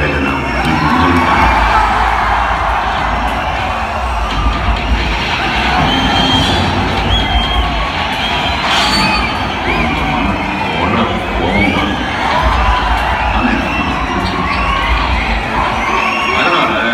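A packed cinema audience cheering, shouting and whistling over a film trailer's loud soundtrack music playing through the hall's speakers, with heavy bass.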